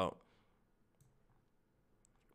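A spoken word trails off, then near silence with one faint computer-mouse click about a second in.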